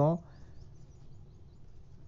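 A man's voice ends a word right at the start, then a low steady background hiss for the rest of the time: room tone during a pause in the talk.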